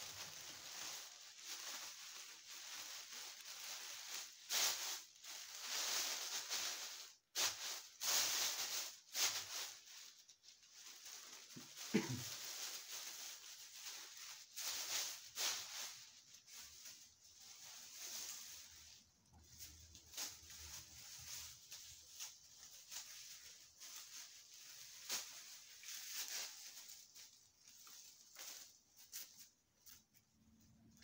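Leafy birch branches rustling and crackling as they are handled and gathered into bundles for bath besoms, with one sharper knock partway through.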